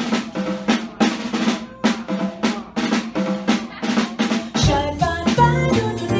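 Jazz drum kit playing a solo break of quick snare and tom hits with rimshots. Near the end the upright bass and the rest of the band come back in.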